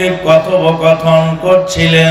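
A man's voice chanting into a microphone in the sung, melodic style of a Bangla sermon, holding a few long notes on nearly one pitch with short breaks between them.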